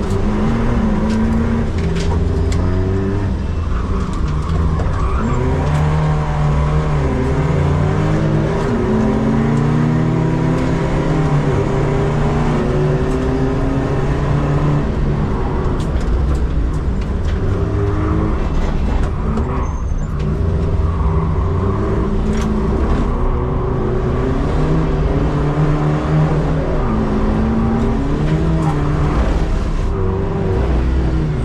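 BMW 120d race car's four-cylinder turbodiesel engine heard from inside the cabin at racing speed. The engine note rises repeatedly under acceleration and drops at gear changes and braking.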